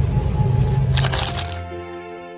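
Crinkly plastic produce packaging crackling briefly about a second in, over low rumbling handling noise on the microphone; then background music comes in.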